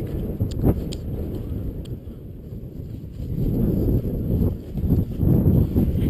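Wind buffeting the microphone in a low, uneven rumble, with footsteps through dry meadow grass.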